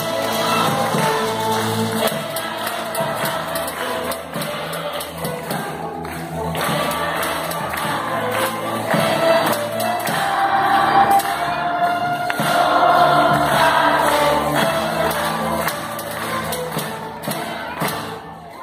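A youth string orchestra of violins, cellos and double bass playing a piece with sustained, changing notes.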